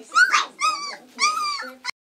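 Three-week-old red standard poodle puppy whimpering: three short, high whines in quick succession, each bending in pitch.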